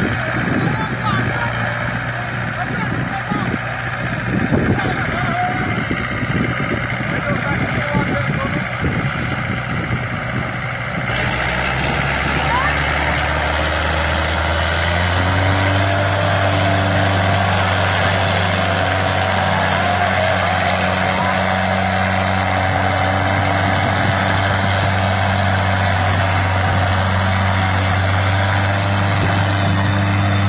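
Diesel tractor engines, a Kubota and a Mahindra, running hard under heavy load as the two tractors pull against each other in a tug of war. The sound is rough at first and changes abruptly about eleven seconds in to a steady, deep engine drone. People's voices are mixed in.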